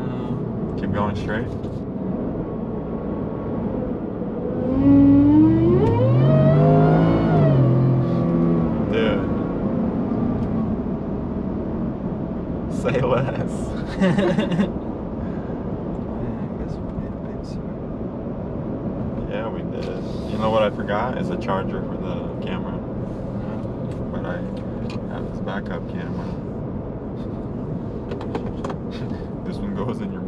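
Whipple-supercharged 5.0L V8 of a 2021 Ford F-150, heard from inside the cab. About five seconds in the truck accelerates hard: the engine note rises steeply in pitch and loudness for about two seconds, then falls away as the throttle comes off. The rest is steady cab and road noise at cruise.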